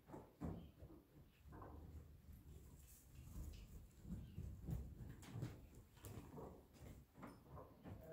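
Faint, irregular muffled thuds of a horse's hooves on soft dirt arena footing as it canters in a circle on a lunge line.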